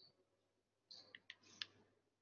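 Near silence, with a few faint short clicks about a second in.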